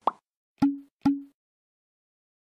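Three short pop sound effects about half a second apart: a sharp click, then two pops each with a brief low tone.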